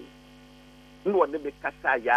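Faint steady electrical mains hum on a telephone phone-in line, with a man's voice coming in about a second in.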